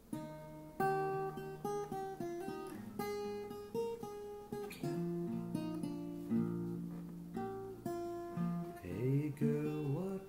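Acoustic guitar strummed by hand, playing a chord pattern in a steady rhythm as the song begins.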